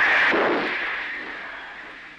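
Submarine torpedo tube firing a torpedo underwater: a sudden loud rush of air and water that dies away steadily over about two seconds.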